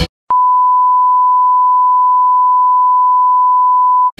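Television test-card tone: one pure, steady beep that begins with a click after a brief silence and holds unchanged throughout.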